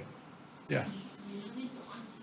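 Mostly speech: a short spoken "yeah" a little under a second in, then fainter talk, over quiet room tone.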